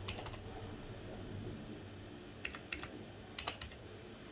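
A few keystrokes on a computer keyboard in short bursts: a small cluster right at the start, then another run of keys about two and a half to three and a half seconds in.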